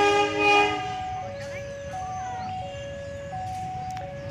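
Diesel locomotive horn sounding a loud multi-tone chord as a horn salute to the waving railfans, cutting off under a second in. Beneath it a level-crossing warning alarm alternates two tones, switching about every two-thirds of a second.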